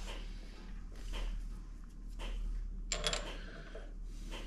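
Quiet handling of metal tooling at a lathe's tailstock drill chuck as the centre drill is taken out: soft knocks and a short metallic clink with a ring about three seconds in, over a low steady hum. The lathe is not running.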